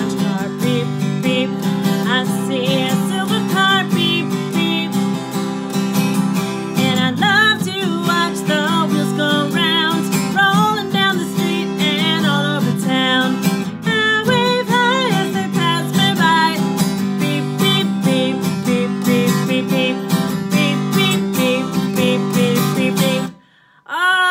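Acoustic guitar strummed steadily while a woman sings a bright children's song with her own accompaniment. The playing stops suddenly near the end.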